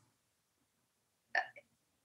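A pause that is mostly silent, broken once, about a second and a half in, by a brief, short vocal sound from a person.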